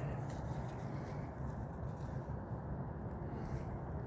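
Quiet, steady outdoor background noise: a low rumble with no distinct sound in it.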